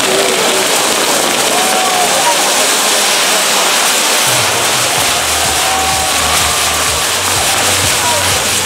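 Ground fireworks (nar tal-art) burning: spinning pyrotechnic wheels and fountains spraying sparks with a loud, steady hiss.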